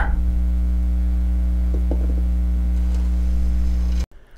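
Steady electrical mains hum, a low buzz with a ladder of overtones, which stops suddenly at the very end.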